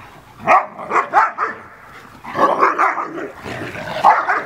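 Several dogs barking and growling in a scuffle, one dog putting another in its place: a few sharp barks in the first second and a half, then a dense burst of barking and growling from about two and a half seconds in.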